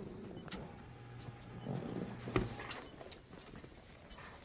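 A small electric motor whirring steadily for about two seconds, with a few sharp clicks around it, the loudest click just after the whirring stops.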